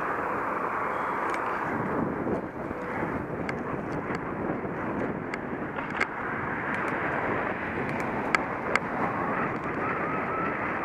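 Steady rush of wind over the microphone of a camera on a moving bicycle, with riding noise. A few sharp clicks are scattered through, the loudest two just past eight seconds in.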